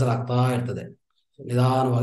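A man's voice, in two stretches with a short pause about a second in.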